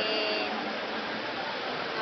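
Steady background noise of a busy room, with a toddler's brief high vocal sound in the first half second.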